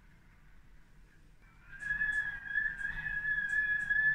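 Storm wind whistling through closed window shutters: a steady high whistle comes in about two seconds in and holds.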